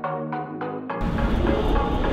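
Music with a quick run of synth notes, cut off sharply about a second in by the louder, noisy rumble of a Suzuki Jimny on a roller traction test: engine running and wheels turning on the rollers with a rapid clatter.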